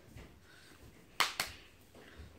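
Hands handling a bowling ball, with two sharp taps close together a little past a second in.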